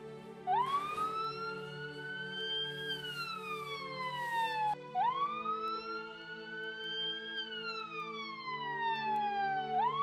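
Ambulance siren wailing: a slow rise and fall in pitch, about five seconds per cycle, heard twice with a third rise starting at the end, over soft sustained background music.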